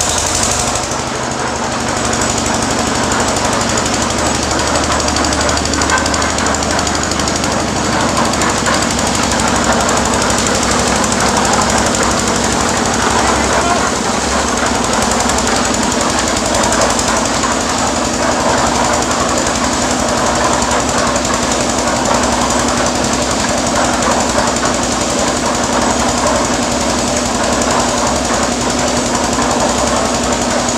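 Small stationary diesel engine running steadily with a rapid knocking beat, driving a concrete mixer whose turning drum churns and rattles a gravel-and-cement mix.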